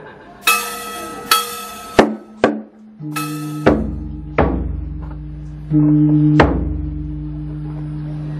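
Ceremonial funeral percussion: two ringing bell-like strokes, then sharp drum beats over a low, long ringing tone like a struck gong.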